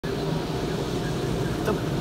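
Automatic car wash: spinning cloth brushes and water beating against the car, heard from inside the cabin as a steady rushing rumble.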